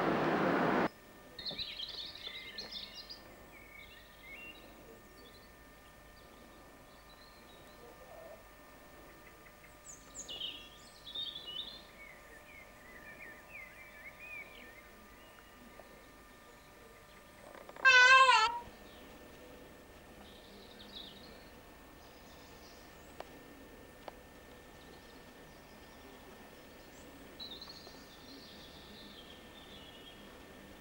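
Small birds chirping now and then, faint and scattered. About eighteen seconds in, one loud, short warbling call cuts in over them.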